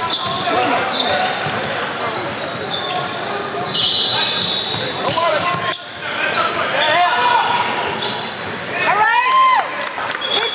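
Basketball game in a large gym: sneakers squeaking on the hardwood floor and a basketball bouncing, under players' and spectators' shouts that echo around the hall. A cluster of sharp squeaks comes near the end.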